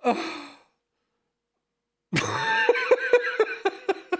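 A man laughing: a short breathy burst of laughter right at the start, then after a silent pause a longer high-pitched laugh in quick even pulses, about four a second.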